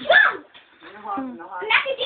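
Children's voices without clear words: a short loud cry at the start, softer voice sounds in the middle, and voices rising again near the end.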